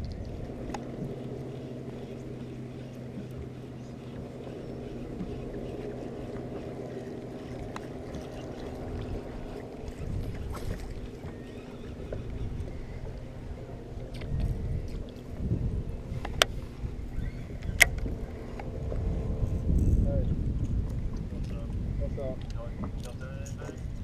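A boat motor humming with a steady low tone, strong for about the first nine seconds and fainter after, with patches of low rumble and two sharp knocks over a second apart about two-thirds of the way through.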